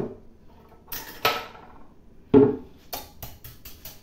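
Kitchen utensils knocking and clinking against a glass mixing bowl of cake batter: a few separate knocks, a heavier thump about halfway, then a quick run of about five light clicks near the end.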